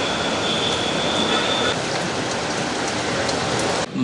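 Steady, even outdoor background noise with a faint high whine in the first couple of seconds; it cuts off suddenly just before the end.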